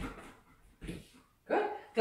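Golden retriever giving a short, whiny bark about one and a half seconds in, after a couple of soft thuds.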